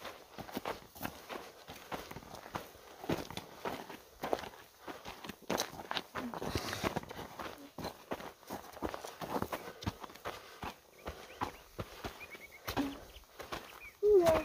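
Footsteps of hikers walking on a dirt trail through dry grass, with trekking pole tips striking the ground, in a quick, uneven run of crunches and taps.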